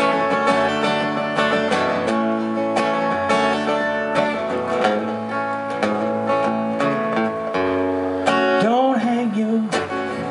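Acoustic guitar strummed in a steady rhythm, an instrumental break in a live solo song. A voice comes in near the end with a few sung notes.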